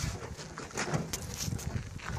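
Rusted, stripped Ford Falcon body shell creaking and knocking irregularly as its loose front end is rocked side to side by hand. The body flexes freely because there is no structure left in it.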